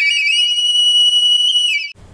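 Background music: a solo flute reaches and holds one long high note with a slight waver, which cuts off abruptly near the end.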